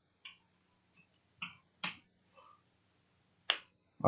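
Keystrokes on a computer keyboard: a handful of short, sharp clicks spaced unevenly as code is typed, over a faint low hum.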